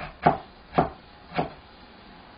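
Chinese cleaver slicing peeled ginger on a cutting board: three chops about half a second apart.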